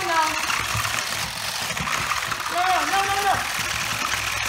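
Two Kamigami robots' small motors buzzing and their plastic legs clattering on a plywood tabletop as they shove against each other, with short voiced exclamations right at the start and again near the end.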